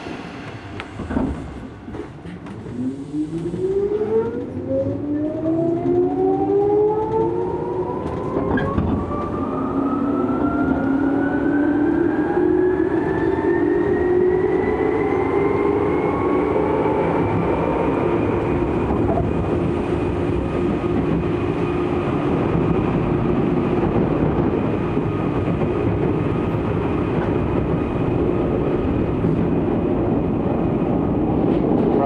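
Tokyu 8500 series electric train accelerating away, heard inside the passenger car: the traction motor and gear whine climbs steadily in pitch for about fifteen seconds, then holds level at running speed over the rumble of the wheels, with a few clicks over rail joints.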